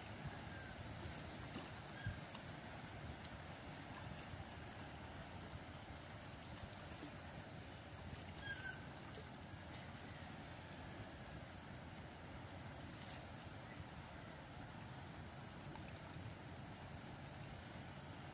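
Faint steady outdoor noise of wind and seawater lapping at the rocks, with a few small clicks scattered through.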